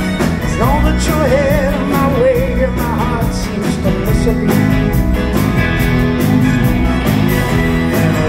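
Live rock band playing: drum kit keeping a steady beat under electric guitars and bass, with a wavering lead melody between about one and three seconds in.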